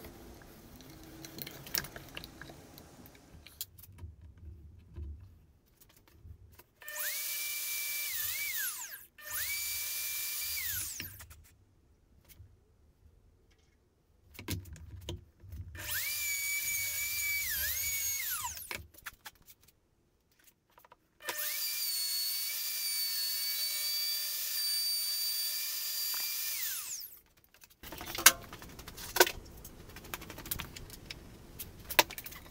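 Handheld electric router running in four bursts of a few seconds, a high whine that dips in pitch briefly under load and winds down after each stop, as it cuts counterbores into the cutting sled's base.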